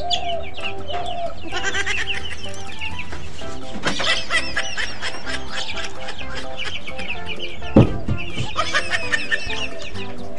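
Chickens clucking, with bunches of quick high chirps, over background music with held notes. A single sharp thump about eight seconds in.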